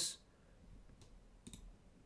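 A few faint computer mouse clicks: one about a second in, then a small cluster about a second and a half in, over quiet room tone.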